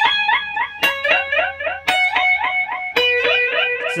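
Electric guitar, a Fender Jazzmaster through a delay, playing a melodic phrase in which the notes slide up. A new note is picked about once a second, each followed by a string of echo repeats of the rising slide.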